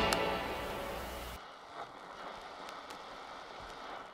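The last chord of a live rock-and-roll band recording rings out and fades, then cuts away about a second and a half in. What is left is faint vinyl record surface noise with a few scattered clicks.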